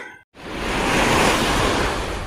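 A rushing whoosh sound effect, like surf or a gust of wind, that swells to a peak about a second in and then fades away.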